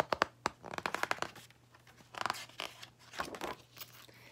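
Pages of a hardcover picture book being handled and turned, heard as several short bursts of paper rustling and crinkling.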